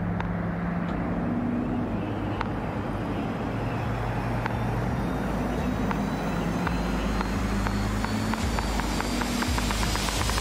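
Heavy-duty pickup truck driving on a highway while towing a large trailer: a steady low engine drone over tyre and road noise. Near the end a run of sharp clicks comes faster and faster.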